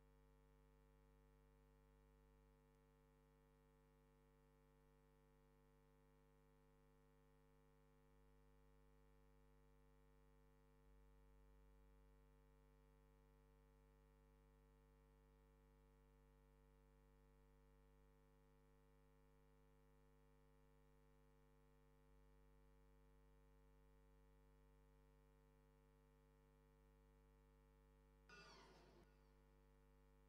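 Near silence: a faint, steady electrical hum.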